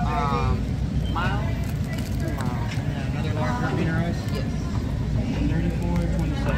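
Indistinct voices talking at a fast-food restaurant counter, over a steady low background hum.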